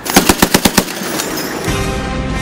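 A rapid burst of automatic gunfire, about eight shots in under a second, followed by theme music coming in near the end.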